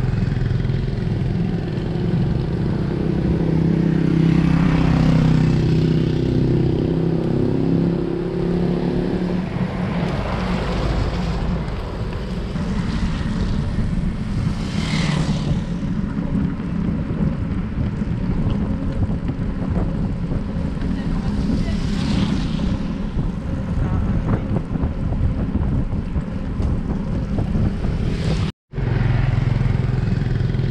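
Steady rush of wind and wet-road noise on a bicycle-mounted camera, with a motorcycle engine passing close by over the first several seconds, its pitch wavering. Two short louder rushes come about halfway and two-thirds of the way through.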